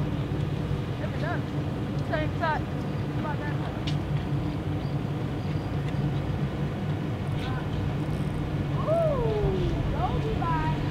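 Gulls calling several times, short mewing cries with one long falling call near the end, over a steady low drone.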